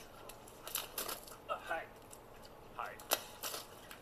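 Faint wordless vocal sounds from a person, broken by several sharp clicks, the loudest a little after three seconds in.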